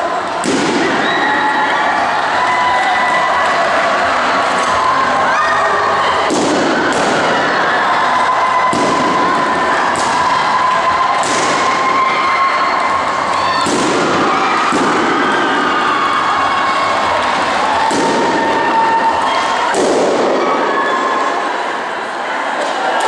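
Balloons popping one after another: about ten sharp bangs at irregular intervals as they are burst by being sat on. Underneath runs a crowd shouting and cheering.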